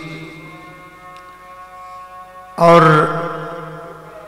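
A man's voice in a slow, chant-like Urdu sermon delivery. The tail of his last word lingers and fades, then about two and a half seconds in he draws out a long, sung-like "aur" that trails away slowly.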